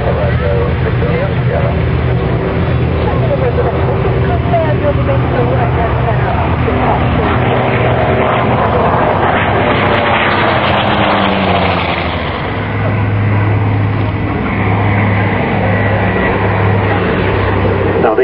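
Big radial piston engines of a Douglas Skyraider (Wright R-3350) and a Hawker Sea Fury (Bristol Centaurus) on a low flypast, a steady deep drone whose pitch falls as the aircraft pass, about two-thirds of the way through.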